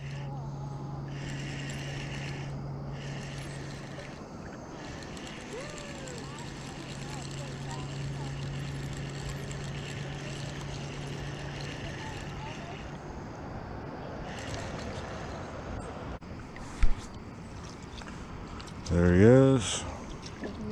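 Spinning reel cranked in stretches to bring in a hooked fish, its gears giving a steady whirring hum that stops and starts. A sharp knock comes late on, and a short voiced exclamation near the end.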